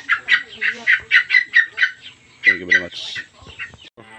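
Chicken clucking in a rapid run of short calls, about five a second, that stops about two seconds in. A brief voice follows a little later.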